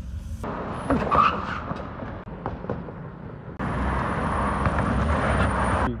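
Street traffic noise from cars passing, picked up on a handheld phone microphone, with a few sharp knocks about a second in. The noise jumps abruptly to a louder, steadier rush about three and a half seconds in, which then cuts off.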